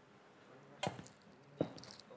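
Handling noise from a make-up touch-up: two short sharp knocks about three quarters of a second apart, with faint crackling rustles near the end.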